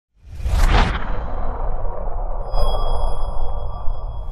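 Intro logo sound effect: a loud whoosh over a deep rumble, joined about two and a half seconds in by a high, steady ringing shimmer.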